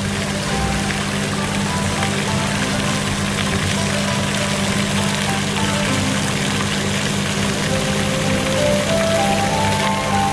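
Steady splashing rush of a floating pond fountain's jet falling back onto the water, with music playing over it; short held melody notes come in near the end.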